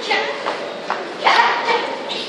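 Short, loud shouts (kiai) from karate fighters sparring in kumite: one at the start and a louder one just past a second in, over a background of many voices.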